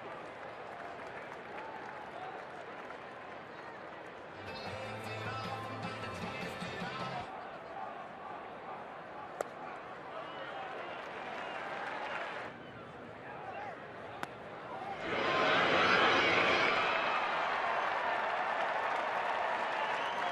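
Baseball stadium crowd noise throughout. Echoing public-address sound plays over the stadium about 5 to 7 seconds in. There are two sharp cracks from the field, and the crowd's cheering swells up loudly about 15 seconds in.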